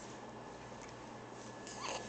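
A young baby's short, faint rising coo near the end, against a quiet room.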